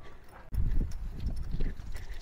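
Walking footsteps with low thumps and rumble on a handheld microphone, starting about half a second in.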